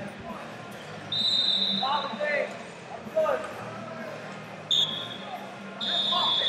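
Whistle blasts: three high, steady tones, the first over a second long and the next two shorter, about a second and four to five seconds in. Distant shouting voices and hall noise run underneath.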